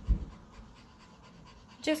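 Mostly quiet room tone after a few low thumps at the start; a woman's voice comes in near the end.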